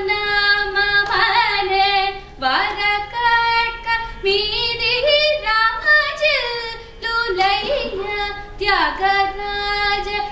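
Female Carnatic vocalist singing long melismatic phrases in raga Hamsanadam, the voice gliding widely up and down in pitch, with brief breaks between phrases about two and a half seconds and seven seconds in.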